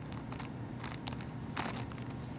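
Clear plastic bag crinkling in three or four short bursts as a squirrel noses into it, over a steady low background rumble.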